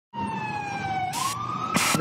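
A siren-like wailing tone in a commercial's soundtrack. It sinks slowly in pitch, then glides upward about a second in, and two short bursts of hiss cut across it.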